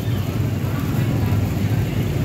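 A steady low motor hum over busy background noise.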